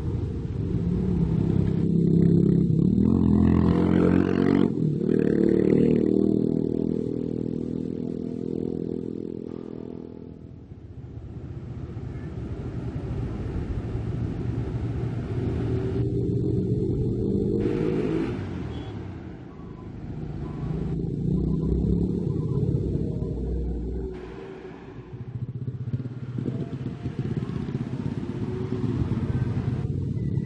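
Motor vehicle engines going by on a road, in several swells that rise and fall in pitch as they rev and pass. The loudest pass comes in the first few seconds.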